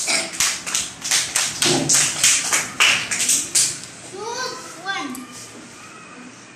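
Rhythmic hand clapping by a group of children, about four to five claps a second, lasting about three and a half seconds, then a child's voice.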